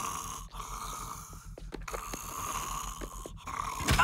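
A sleeping cartoon character snoring, in drawn-out snores that repeat about every second and a half.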